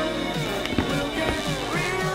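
A song playing through a motorcycle helmet's Bluetooth intercom speakers (a BT-S2 unit) during a sound test. A few light knocks come from hands handling the helmet.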